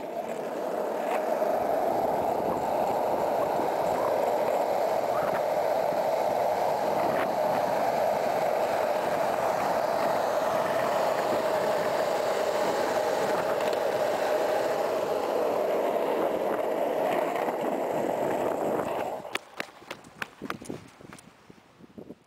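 Z-Flex skateboard's wheels rolling fast down an asphalt road: a steady rolling roar that holds for most of the run, then drops away near the end, followed by a few sharp clicks and knocks.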